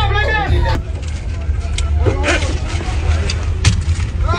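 Music and voices for the first moment, cut off suddenly, then a steady low rumble with faint voices in a room.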